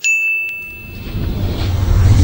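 A bright ding sound effect that strikes at once and fades away over about a second, followed by a low rumble that swells toward the end.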